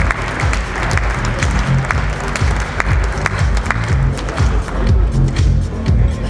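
Audience applauding over loud electronic dance music with a steady beat of about two hits a second. The applause dies away about two-thirds of the way through, leaving the music.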